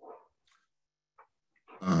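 A dog barking faintly in a few short yelps, then a man starts speaking near the end.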